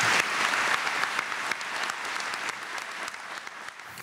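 Audience applauding, the clapping thinning and dying away toward the end.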